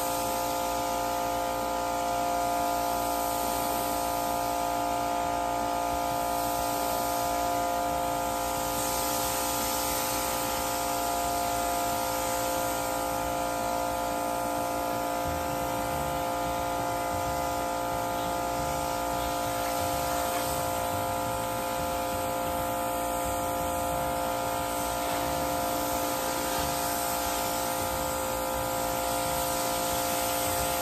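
Pressure washer running with a steady hum while its wide-fan white tip sprays water, rinsing soap foam off a pickup truck's body and windows with a continuous hiss.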